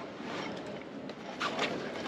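Steady background noise in the open air, with a few faint light knocks about one and a half seconds in.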